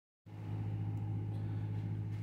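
A steady low hum that starts a split second in and holds one even pitch, with a few fainter tones above it.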